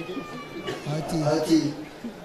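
A man speaking into a handheld microphone, amplified over a hall's PA, in short broken phrases. A faint, thin, high, slowly falling sound runs under the speech in the first second.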